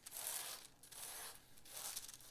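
Pencil scratching across tracing paper in a few short shading strokes, faint.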